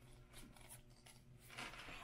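Near silence, with faint rustles and small clicks from gloved hands handling nail-art transfer foil: once about half a second in, and again near the end.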